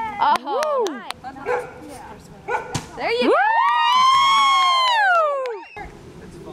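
Young children's voices calling out in short rising and falling cries, with a few sharp taps. About halfway through comes one long, loud, high-pitched squeal that rises, holds for about two seconds and falls away.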